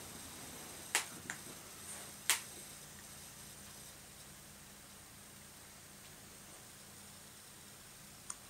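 Faint room tone broken by three short clicks about one, one and a half and two and a half seconds in, the last the loudest, then only the quiet room.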